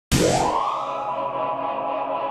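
Channel logo sting: a rising sweep just after the start that settles into a held, ringing chord.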